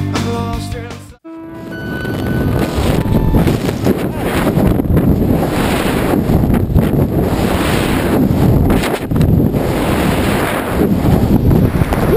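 A rock music track cuts off abruptly about a second in. It is followed by loud, steady wind noise rushing over the camera microphone during tandem freefall.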